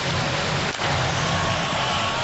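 Hockey arena crowd: a steady, dense din from thousands of spectators in the stands during live play.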